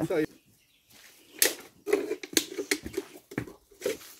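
Scattered crackles and rustles of dry chopped cane and grass forage being handled for mixing, starting about a second and a half in, with a few brief low murmurs of voice among them.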